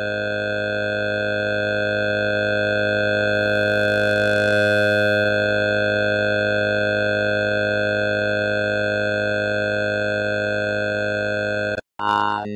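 One sustained electronic chord of many steady pitches, held unchanged and slowly swelling in level, that cuts off abruptly just before the end: a long held drone in an AI-generated song.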